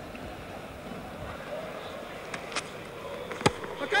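Low, steady murmur of a large stadium crowd, then about three and a half seconds in a single sharp crack of a cricket bat striking the ball as the batsman comes down the pitch and miscues it.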